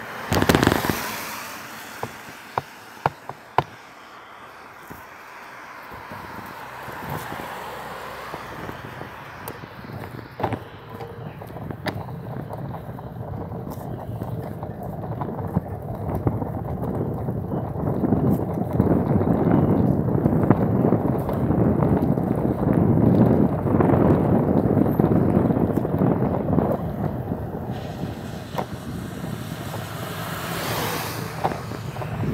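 Travel noise of a vehicle moving along a wet road, heard from inside. It builds from quiet to loud through the middle and eases off near the end. There is a loud knock just after the start and a few sharp clicks in the first seconds.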